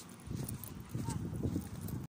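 Footsteps on a paved walkway, with indistinct voices.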